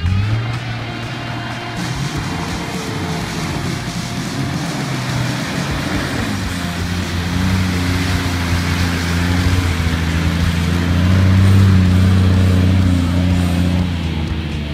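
A four-wheel-drive's engine revving and working under load on a muddy track, its pitch rising and falling in the first few seconds, then running steadier and growing louder about eleven seconds in.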